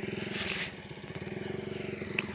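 A small motorcycle engine running slowly, a steady, fast-pulsing hum. There is a short hiss about half a second in.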